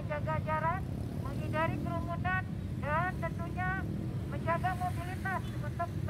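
A woman's voice speaking through a handheld megaphone, in short phrases, over the steady low rumble of road traffic.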